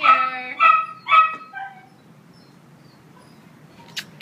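A dog barking: about four short, high-pitched barks in quick succession in the first second and a half, then a lull.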